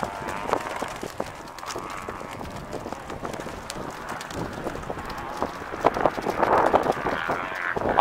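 Irregular taps and rustling of footsteps and handheld camera handling, with people talking faintly near the end.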